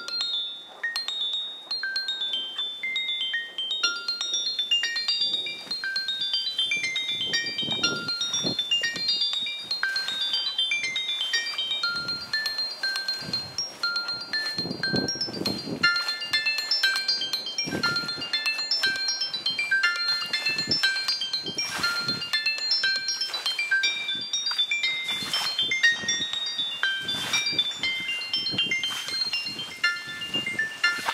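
Music-box lullaby: a high melody of short, plucked, chiming notes that ring out one after another, with a few soft swells of noise beneath.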